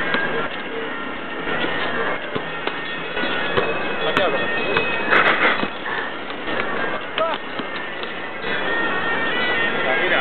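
Reed pipes playing long held notes over a hubbub of crowd voices, with a few sharp taps.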